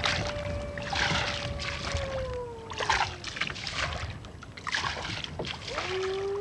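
A small boat pushed through a reed bed: rhythmic swishing of reeds and water about once a second. Under it runs a long sustained tone that slowly falls in pitch, and a new tone comes in near the end.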